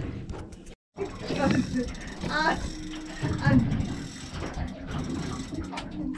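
Fishing reel being wound, a mechanical clicking and whirring, with brief exclamations from people on the boat.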